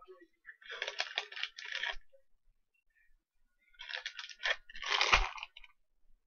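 Crinkly plastic bag of Sour Punch candy being opened and handled, crackling and rustling in two bursts, with a soft low bump during the second.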